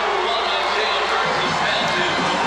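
Stadium crowd cheering a touchdown: a steady wash of crowd noise without a break.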